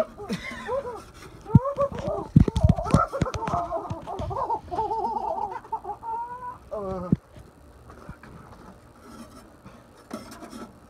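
Several people laughing hard, in high, wavering, breathless laughs, with a few low thuds about two to three seconds in. The laughter dies away about seven seconds in.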